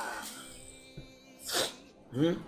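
A short, sharp burst of breath noise from one of the men, sneeze-like, about one and a half seconds in, over faint background music.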